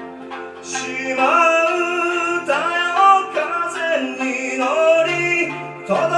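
Live band performance: a voice sings a stepped melody that comes in about a second in, over an accompaniment of plucked strings and keyboard.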